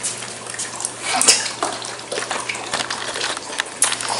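A dog lapping water from a bowl: a quick, uneven run of small wet splashes and clicks.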